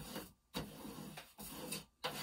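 Sheets of paper rustling and sliding over a tabletop as they are handled. The sound comes in two stretches with a brief gap about half a second in.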